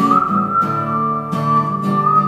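A whistled melody of long, held high notes over a strummed acoustic guitar.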